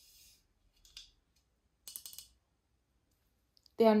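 Light clicks from cookware being handled while unpacked: one click about a second in, then a quick cluster of clicks around two seconds, as a glass pot lid and pans are handled. Speech begins near the end.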